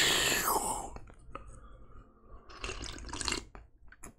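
A man sipping a drink from a travel mug: a long hissy slurp in the first second, then small clicks and a shorter burst of sipping and swallowing about three seconds in.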